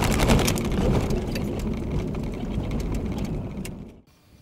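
A vehicle driving across a wooden-plank bridge deck: tyres rumbling over the boards, with many sharp knocks and clatters from the planks. The sound stops abruptly just before the end.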